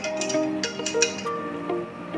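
Instrumental background music with a melody of held notes. Over it, stainless steel tongs clink against an aluminium bowl several times in the first second.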